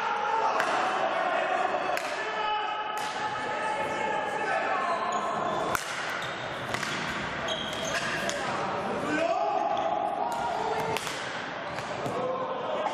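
Indoor hockey play on a wooden sports-hall floor: several sharp knocks of sticks striking the ball and the ball hitting the side boards, echoing in the hall, with players' voices calling out.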